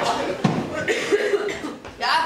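A single sharp cough about half a second in, followed by a few short voice sounds.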